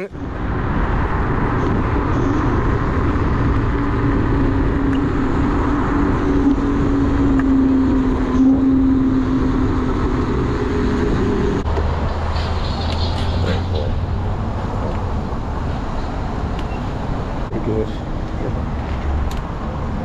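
Steady rush of wind over the camera microphone of a moving rider, with road traffic around: a droning tone sinks slightly over several seconds and stops about halfway, then a lower hum follows.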